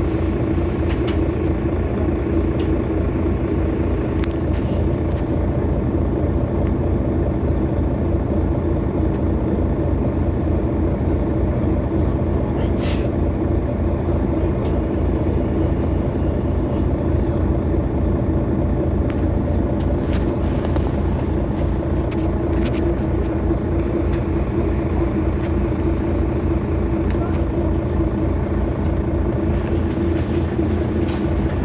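Mercedes-Benz Citaro city bus running with a steady, unchanging engine drone, with a few short clicks over it.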